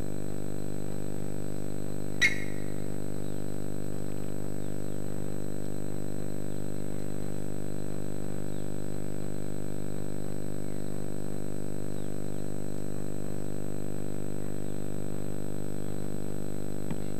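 A steady low hum with a thin high whine above it, unchanging throughout, broken once by a sharp click about two seconds in.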